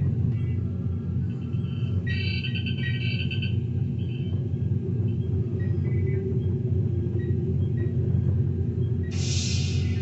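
Steady deep hum of a sci-fi starship-bridge ambience played over speakers, with a short run of electronic console chirps about two seconds in and a burst of hiss near the end.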